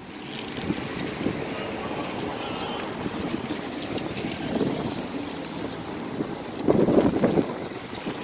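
Wind blowing on the phone's microphone: a steady rushing noise, with a louder gust about seven seconds in.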